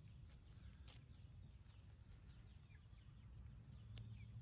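Near silence: faint outdoor background with a low rumble, scattered faint high chirps and a soft click about a second in.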